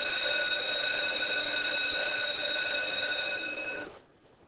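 An electronic bell tone: one steady tone with several pitches sounding together, starting suddenly, held for about four seconds and then cut off.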